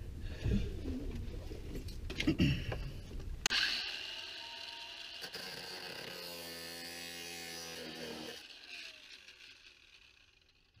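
Handling clatter of a small brass part, then an angle grinder with an abrasive cut-off wheel switched on about a third of the way in, cutting down a brass shower-valve stem. It runs steadily for several seconds, is switched off, and winds down near the end.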